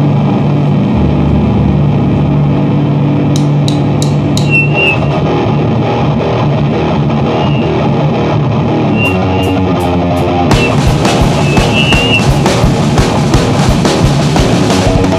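Live rock band on electric guitar and bass guitar, opening a song with long held chords and a few cymbal hits. About ten seconds in, the drum kit comes in and the full band plays at full volume.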